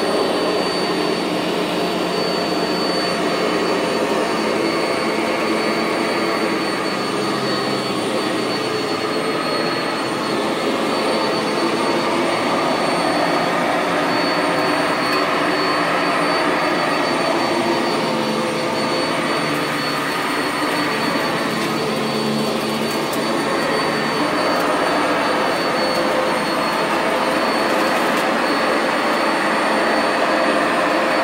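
Sanitaire SC679J commercial upright vacuum cleaner running steadily on carpet, its motor noise topped by a thin, high steady whine, as it picks up clumps of dust and lint.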